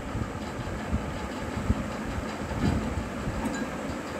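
Steady low rumbling background noise with a rough, rattling texture.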